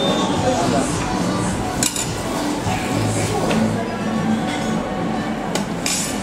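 Canteen serving-line clatter: metal tongs and serving utensils clinking against steel buffet trays and dishes, a few sharp clinks standing out, over background voices and music.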